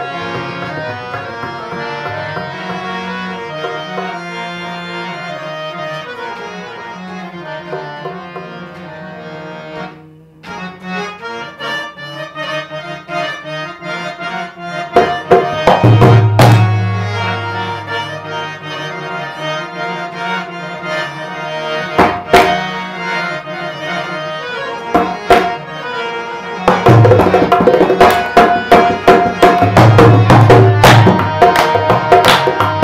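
Indian harmoniums playing a sustained reedy melody, with a short dip about ten seconds in. A dholak drum comes in about halfway with scattered strokes and a deep low boom, and drums fast and dense near the end.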